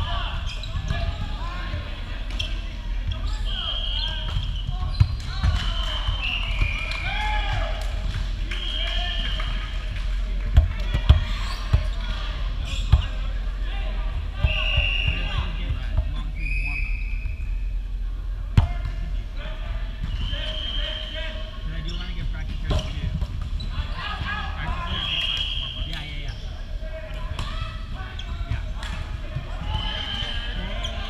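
Volleyball rally on a hardwood gym court: several sharp slaps of the ball being hit, the loudest spaced through the middle, among repeated short, high squeaks of sneakers on the wooden floor.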